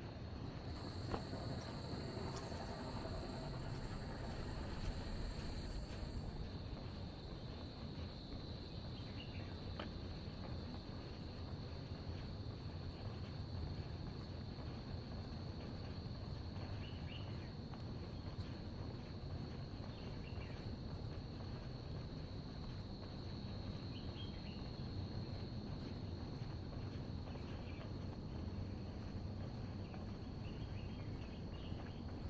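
Insects singing: a steady high-pitched drone throughout, joined for the first few seconds by a second, even higher buzzing insect that stops about six seconds in. A few faint short chirps come later over a low, steady background rumble.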